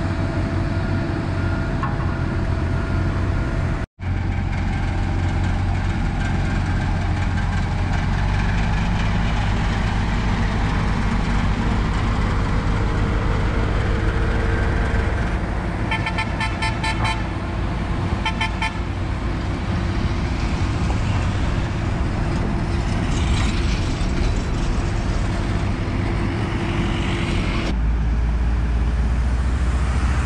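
Diesel engines of asphalt-paving machinery, a pneumatic-tyre roller and then an asphalt paver, running steadily with a low drone. The sound cuts out for an instant near the start. A little past halfway come two quick runs of short, high, rapid beeps.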